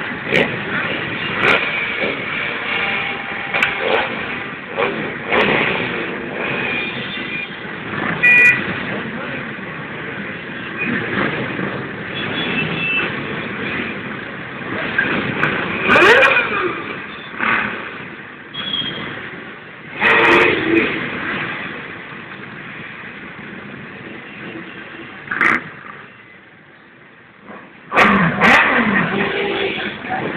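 Many motorcycle engines running and revving together, mixed with crowd chatter, with several sudden loud peaks and a short lull a couple of seconds before the end.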